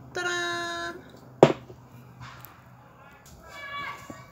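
A woman's voice holding one steady sung or hummed note for nearly a second, then a single sharp click about a second and a half in. A shorter, fainter vocal sound follows near the end.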